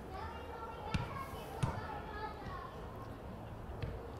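Faint chatter of distant voices across an open sports ground, with two short knocks between one and two seconds in.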